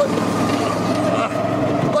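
Go-kart engine running steadily under way, a held hum with no change in pitch.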